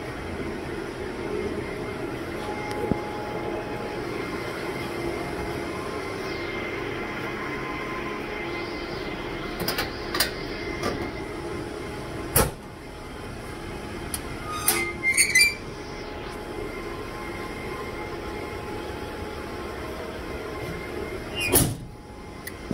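Steady whirring of an equipment shelter's air conditioning and cooling fans. A few sharp clicks and knocks from the phone being handled fall around the middle and near the end.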